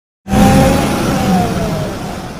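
A car going past at speed: engine and road noise that starts abruptly, with the engine's pitch dropping slightly as the sound begins to fade.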